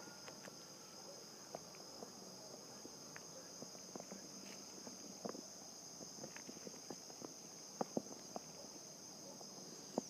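Faint, steady high-pitched chirring of insects in grassy fields, with scattered light taps and clicks, two of them louder about eight seconds in.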